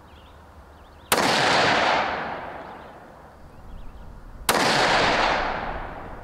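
Two rifle shots from a Tikka UPR in 6.5 Creedmoor, about three and a half seconds apart. Each is a sharp crack followed by a long echoing decay.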